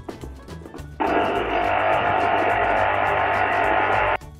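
Electric citrus juicer's motor running, spinning its reamer cone under a pressed orange half: a loud steady whir that starts suddenly about a second in and stops abruptly at the end, with background music underneath.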